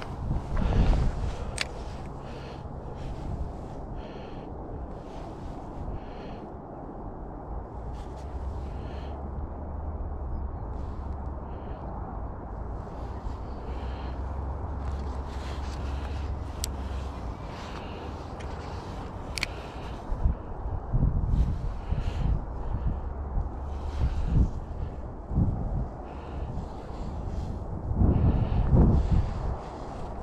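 Wind buffeting the microphone in low gusts, heaviest in the last third, with scattered short high bird chirps over it.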